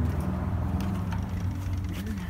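A low, steady hum with a few faint clicks over it.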